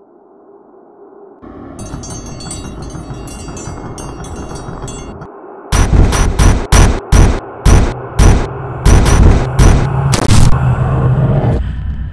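Intro sting of music and sound effects: a low drone builds with a shimmering high texture, then, about six seconds in, a run of about a dozen loud, booming hits over a sustained low tone.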